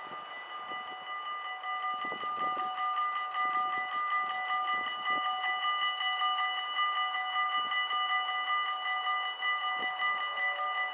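Dutch level-crossing warning bells start ringing suddenly and ring on in a fast, even pulse, warning of an approaching train; the barriers begin to lower near the end.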